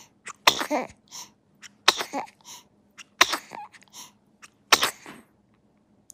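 A newborn baby making four short, sharp bursts of breath, about a second and a half apart, each trailing into a smaller sound.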